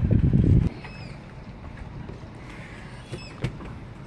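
A short low rumble on the microphone at the start, then a few faint clicks and light clinks as the flame arrester is lifted off the carburetor. The engine is not running.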